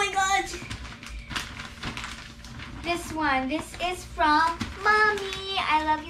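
A girl's voice making short wordless sounds. Knocks and rustling from a large gift-wrapped box being lifted and handled fall mostly in the first half.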